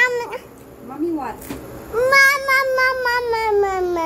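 A young child's drawn-out, wordless vocal notes with a wavering pitch: one ends just after the start, and a longer one begins about halfway and slowly sinks in pitch.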